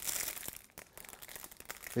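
Plastic packaging bag crinkling as it is handled, loudest in the first half second, then faint rustles and small clicks.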